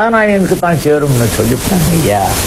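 A man's voice with strongly swooping pitch, sliding down in the first half-second, over a continuous raspy hiss.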